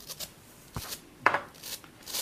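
A few sharp clicks and knocks from things handled on a tabletop, the loudest about a second and a quarter in.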